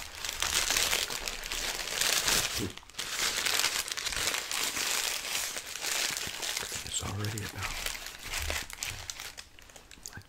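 Paper sandwich wrapper crinkling and crumpling close to the microphone as a biscuit is folded back up in it, with a brief pause about three seconds in, then the crinkling thins out toward the end.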